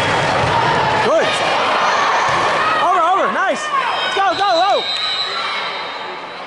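Indoor volleyball rally: the ball is struck with a sharp slap about a second in, over steady crowd noise echoing in the gym, and players or spectators shout in two quick bursts of short rising-and-falling calls around the middle.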